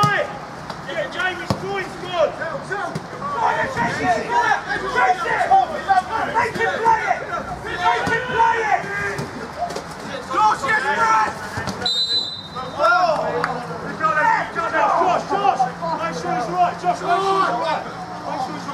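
Players' and spectators' voices shouting and calling across a football pitch, with a short, high referee's whistle blast about two-thirds of the way through, stopping play for a foul.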